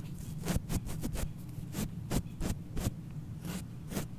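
A small brush stroked across the metal grille of a Blue Yeti microphone, heard as about a dozen short scratchy strokes at an uneven pace over a steady low hum.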